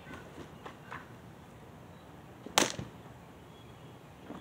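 A rubber-backed bath mat being shaken out hard, its fabric flapping with a few soft snaps and then one sharp, loud crack about two and a half seconds in.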